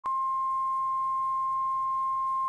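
A steady 1 kHz line-up tone at the head of a broadcast master tape, switching on abruptly at the start and holding at one even pitch and level.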